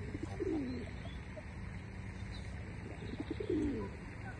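Pigeon cooing twice, once about half a second in and again near the end, each coo a low call falling in pitch.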